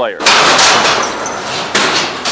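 A loud clatter of heavy arena fittings being moved. It starts suddenly, runs on for about a second and a half and ends with a bang.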